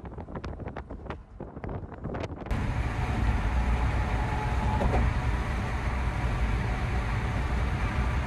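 Road noise of a moving car heard from inside: first an uneven, gusty rush with many short flickers. About two and a half seconds in, after a sudden change, it becomes a louder steady low rumble of tyres and engine at driving speed.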